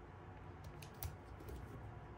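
Washi tape being pulled off its roll and pressed along a paper planner page: a few faint, short clicks and rustles, the most noticeable about a second in.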